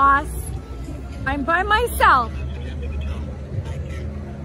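A woman's voice letting out short wordless exclamations, the last a loud falling cry about two seconds in, over a steady low rumble of street traffic.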